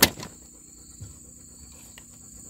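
A single sharp click as the replacement control board of an RV absorption refrigerator is handled and pressed into place, then a fainter tick about a second in. Steady insect chirring goes on behind.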